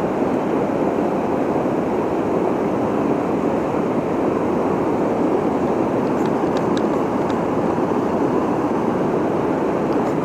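Steady rushing of river water pouring over a low dam, an even noise that holds at one level throughout, with a few faint ticks about six to seven seconds in.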